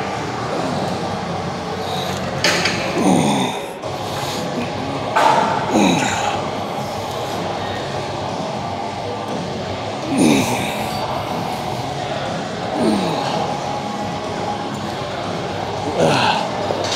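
A man exhaling hard with a short falling grunt on each rep of bent-over dumbbell rear-delt flyes, four times a few seconds apart, over the steady room noise of a large gym.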